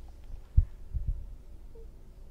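Dull low thumps picked up on a clip-on microphone: one about half a second in and a quick pair about a second in, over a steady low hum.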